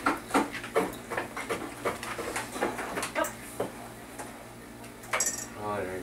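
Dishes and cutlery clinking at a kitchen counter: a quick run of light clinks over the first few seconds, then quieter.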